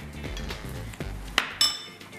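Kitchenware clinking: one sharp clink with a brief high ring near the end, as tableware is handled at the plate. Background music plays underneath.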